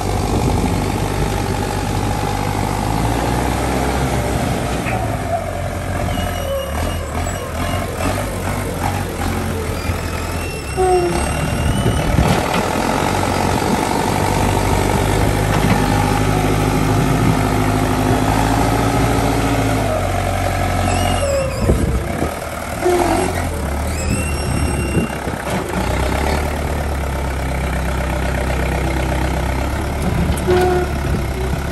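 LiuGong backhoe loader's diesel engine running under load while the machine levels gravel with its front bucket. The engine note shifts several times as the throttle and load change.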